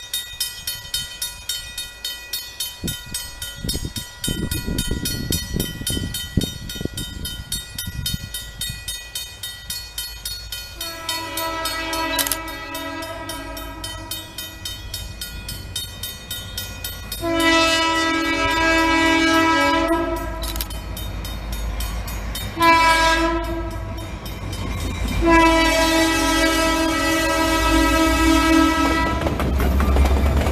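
Grade-crossing bell ringing at a steady beat while an approaching diesel freight locomotive sounds its air horn in the crossing signal: two long blasts, a short one, then a long one. The low rumble of the locomotive rises as it reaches the crossing at the end.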